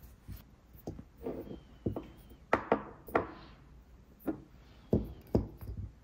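A scatter of light knocks and clicks from nail-art supplies being handled on a tabletop: a metal stamping plate slid and set down, and a plastic practice-nail stick and a glass polish bottle picked up.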